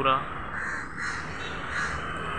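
A crow cawing twice, harsh calls about half a second in and again near the end.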